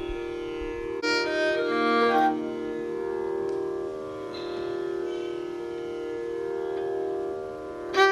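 Steady tanpura drone holding the tonic, with a few short stepped notes on the violin about a second in, just before the piece begins.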